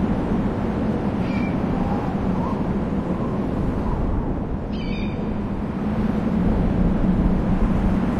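Outdoor ambience of steady wind noise, with two short, high bird calls, one about a second in and another about five seconds in.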